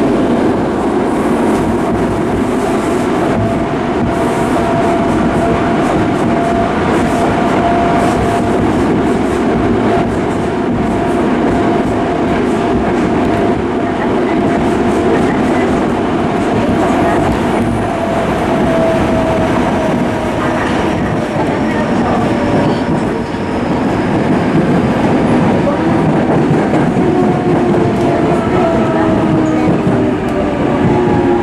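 Yokohama Municipal Subway 3000A train heard from inside the car, running at speed through the tunnel: a steady rumble of wheels on rail with scattered clicks and a thin whine from its Mitsubishi GTO-VVVF traction inverter. In the last few seconds the whining tones fall in pitch as the train begins to slow for the next station.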